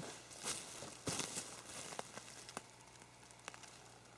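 Faint rustling and shuffling with a few light clicks and knocks spread through, as a person moves on the forest floor and handles wooden hiking staffs.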